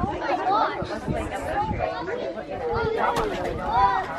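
Children's voices chattering and calling out, overlapping, with no clear words.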